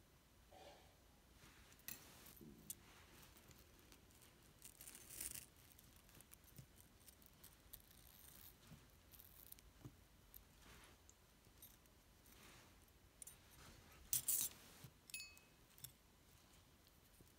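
Faint clinks and light jingling of small metal jewelry pieces, chains and earrings, being handled and set down on a towel, with two brief louder jangles, one in the middle and one near the end.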